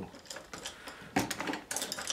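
Small painting tools being picked over and handled: a few quick clusters of light clicks and clatters.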